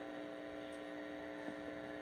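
Faint, steady electrical hum of several tones at once, the mains hum of the microphone and sound system.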